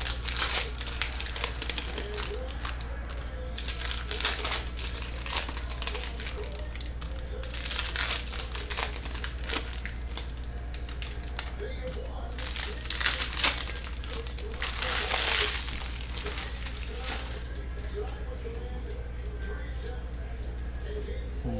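Foil trading-card pack wrappers crinkling and cards being handled and stacked, in irregular crackles, with a longer burst of crinkling about fifteen seconds in. A steady low hum runs underneath.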